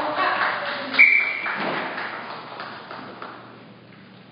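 A short, sharp whistle blast about a second in, the loudest sound, which is the referee's signal for the judges' flag decision in a kata match. Scattered hand claps can be heard around it, fading out over the following seconds.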